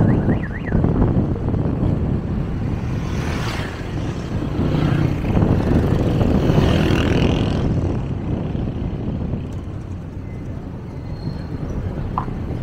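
Busy road traffic with motorcycles, cars and auto-rickshaws passing close by. The engine and tyre noise is steady and swells as louder vehicles go past, about three seconds in and again around six to seven seconds.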